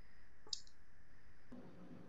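A single short, sharp click about half a second in, over quiet background hiss.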